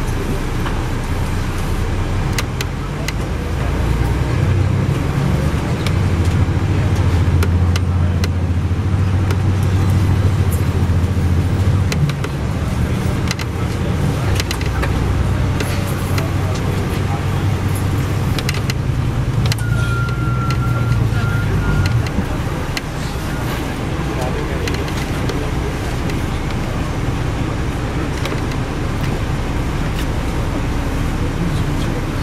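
Cabin sound of a 2002 MCI D4000 coach bus under way: the engine's low drone builds and holds for more than half the time, then eases off about two-thirds through, with rattles and clicks from the cabin fittings throughout. A brief thin high squeal sounds just before the drone eases.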